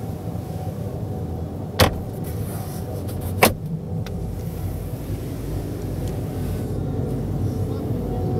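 Plastic glovebox lid of a 2015 Dacia Duster being handled and snapped shut: two sharp clicks, the second one louder, about a second and a half apart. They sit over the steady background din of a busy hall.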